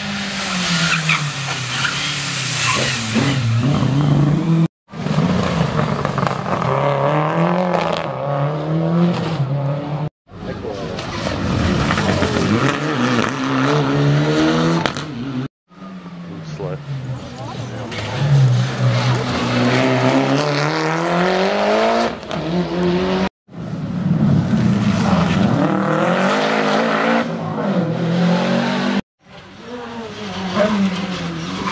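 Rally cars accelerating hard past the stage in six short segments, each broken off abruptly. Each engine climbs in pitch and drops back at every gear change.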